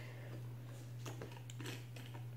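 Faint clicks and scrapes of the plastic screw ring being turned off the voice emitter of a Soviet PBF rubber gas mask, over a steady low hum.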